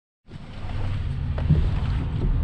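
Semi truck's diesel engine idling, a steady low rumble, with a brief knock about one and a half seconds in.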